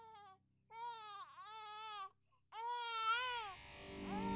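An infant crying in three wailing cries, each rising and falling in pitch, the last one the loudest.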